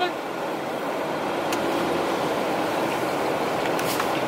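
Steady noise inside a car's cabin, from the car and its fan or road, with a faint click about a second and a half in and another near the end.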